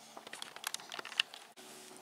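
Plastic shrink-wrap on a packaged puzzle crinkling in faint, scattered crackles and clicks as it is handled.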